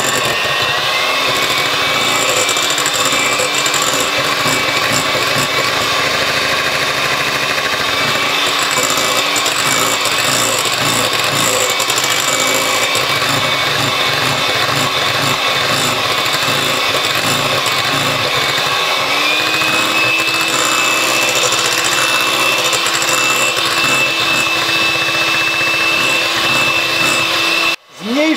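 Handheld electric mixer running steadily, its beaters whisking egg-and-sugar sponge batter. The motor's whine rises in pitch as it gets up to speed in the first second, then steps up again about two-thirds of the way through.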